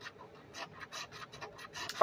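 A scratch-off lottery ticket being scratched: quick, short rasping strokes, about four or five a second, fairly faint.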